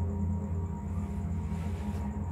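A low, steady droning hum.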